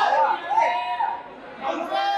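Several voices calling out and chattering over one another, with drawn-out shouted calls.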